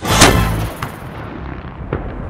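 Black-powder cannon firing: one loud boom a moment after the start, trailing off into a long rumble.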